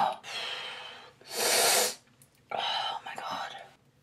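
A woman's sharp, breathy breaths, three in a row with the loudest in the middle, from the pain of pulling out her own nose stitches.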